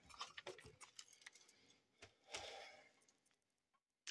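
Near silence with faint scattered clicks and ticks of handling as a plastic RC buggy is turned around in the hands, then a soft brief rustle a little after two seconds in.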